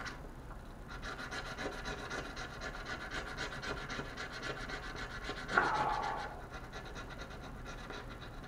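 A scratch-off game card being scratched off in short, rapid strokes, with one louder rasp about five and a half seconds in.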